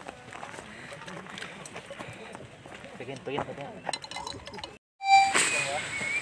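Faint voices in the background with light metallic clinks from camp cookware at a gas stove. A moment of dead silence just before the end, then a sudden louder sound.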